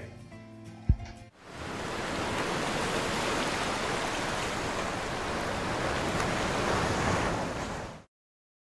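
A single low thump about a second in, then a steady, surf-like rushing noise from an outro sound effect that fades in and holds for about six seconds before cutting off suddenly.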